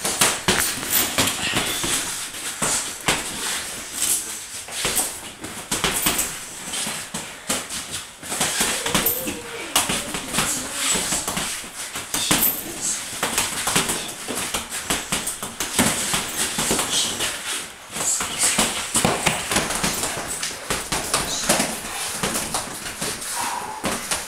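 Sparring in a boxing ring: gloves landing punches and blocks, and feet shuffling and stamping on the ring floor, in a run of irregular slaps and thuds.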